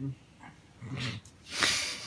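A man gives a short low grunt, then a loud breathy, snort-like exhale.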